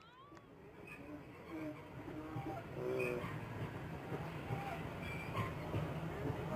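Faint, distant shouts and calls of players across a playing field, short and scattered, over a steady low background rumble that grows a little louder.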